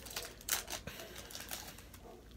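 Light handling noise of plastic card holders and sleeves: a few faint clicks and rustles, scattered and irregular.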